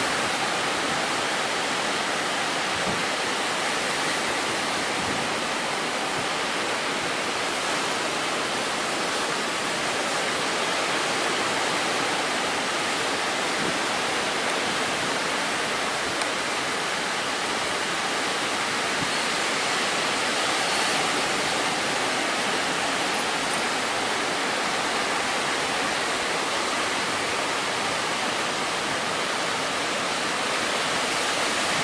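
Atlantic Ocean surf breaking on a sandy beach: a steady, unbroken rush of waves with no separate crashes standing out.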